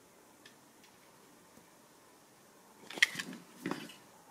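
Light handling noise from the tankless water heater's plastic heating-element block being turned over in the hands: a few faint ticks, then two short clatters about three seconds in.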